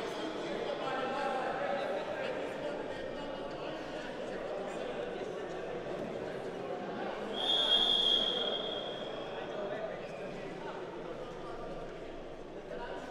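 Indistinct chatter of people in a large sports hall, with a referee's whistle blown once, a steady high note of a little over a second, about seven and a half seconds in.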